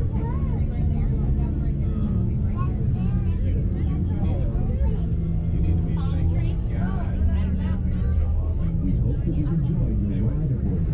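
Steady low machine rumble inside the Sky Tower's observation cabin, with indistinct chatter of riders over it.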